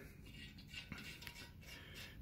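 Near silence: quiet room tone with faint small metallic clicks of a steel bolt being handled against a cast-iron engine block.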